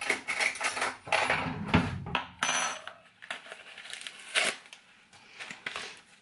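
A plastic snack pouch of freeze-dried marshmallows being handled and pulled open, crinkling, with many short sharp clicks and light clinks, busiest in the first half and sparser later.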